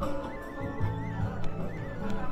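Music playing, a high wavering melody over a steady low bass.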